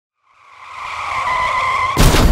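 Car tyres screeching in a hard skid: a steady high squeal that fades in from silence and grows louder.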